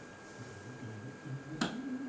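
A single sharp click, like a finger snap, about one and a half seconds in, over a faint low wavering voice.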